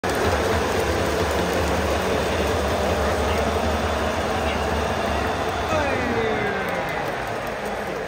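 Baseball stadium crowd, a steady dense din of many fans' voices, with a couple of falling calls rising above it about six seconds in.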